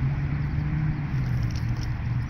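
Steady low droning hum of a running motor or engine, with an even background hiss.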